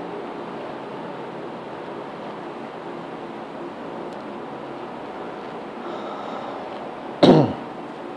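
A man coughs once, briefly, near the end, over a steady background hiss.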